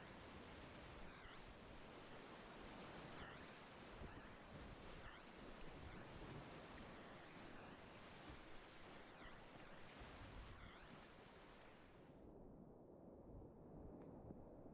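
Rushing whitewater of a river rapid heard from a kayak: a faint, steady hiss of churning water. About twelve seconds in, the brighter part of the sound drops away and leaves a duller rush.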